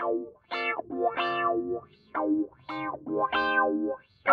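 Music: an electric guitar with effects plays about six short pitched phrases, each broken off by a brief silence.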